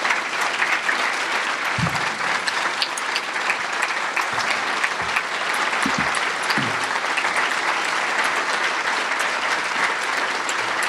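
Audience applauding steadily throughout, with a few low knocks in the middle.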